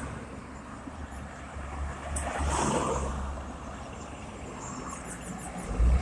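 Road traffic going by close at hand: a car passes about two to three seconds in, its sound rising and falling away, and another vehicle, a small pickup truck, draws near at the end.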